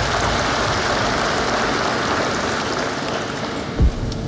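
Large audience applauding steadily after a line in a speech. A single low thump near the end.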